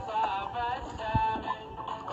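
An Arabic song: a singing voice carrying a wavering melody over musical accompaniment, with a few low drum thumps.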